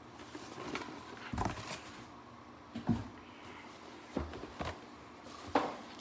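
A cardboard box being handled and opened: about five knocks and thumps with light scraping between them, the sharpest about three seconds in and again near the end.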